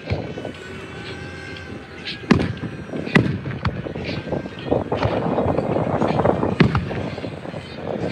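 Aerial fireworks shells bursting: about six sharp bangs spaced from half a second to a second and a half apart, starting about two seconds in, over a continuous rush of noise that grows in the second half.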